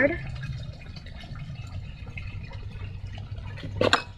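Soft crackling and rustling as a flexible clear plastic orchid pot is squeezed and the sphagnum-potted root ball worked loose, over a steady low hum. A brief exclamation comes near the end as the plant comes free.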